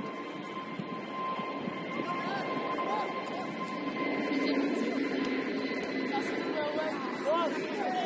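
Footballers' voices calling and shouting during play, over a steady background of outdoor noise with a faint steady high whine.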